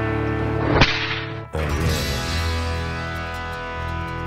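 A single sharp whip-crack sound effect about a second in, over a held music chord. After a brief dip, a new sustained chord starts at about a second and a half.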